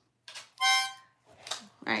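A child blowing a single short note on a harmonica, held steady for about half a second.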